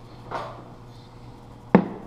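A single sharp knock near the end: a metal transaxle gear set down on a wooden workbench.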